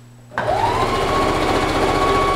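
Electric domestic sewing machine starting up about a third of a second in, its motor whine rising quickly and then running steadily at speed with rapid, even stitching as it sews a strip of elastic onto the skirt fabric.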